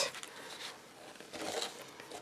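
Faint rustling of a printed plastic transparency sheet being handled and slid across the table, a soft scuff twice.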